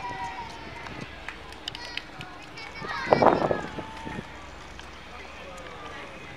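Indistinct voices of people nearby talking outdoors, with one louder voice about three seconds in.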